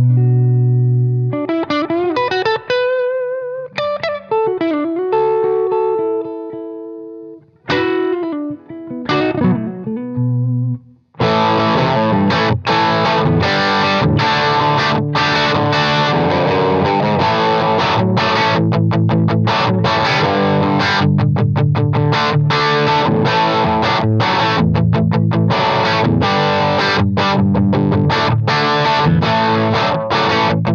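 Gibson Les Paul Standard electric guitar with humbuckers, strung with 10-gauge strings, played through an amp: single-note lead lines with string bends for the first eleven seconds or so. It then switches to a dense, continuous overdriven part that runs to the end.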